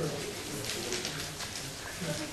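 Quiet, indistinct speech, lower than the talk around it.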